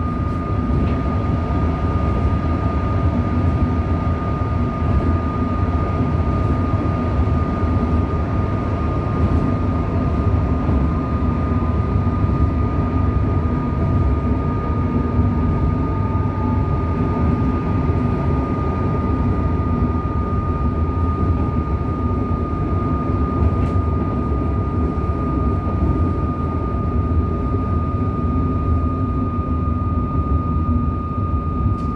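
Inside a moving Melbourne suburban electric train: a steady rumble of the wheels on the track, with a constant high whine over it.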